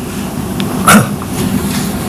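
A pause in a man's speech, with steady low room hum and one short vocal sound, a throat noise, about a second in.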